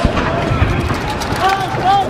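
Several voices shouting and calling out at once, overlapping, over street noise, with louder calls near the end.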